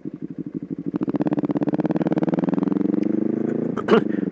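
Motorcycle engine running as the bike is ridden along: a low, even beat that grows louder about a second in, its pitch climbing a little, then holds steady until a brief dip near the end.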